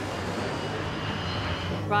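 Jet airliner engines at climb thrust as the plane pulls up in a go-around: a steady rushing noise with a faint high whine.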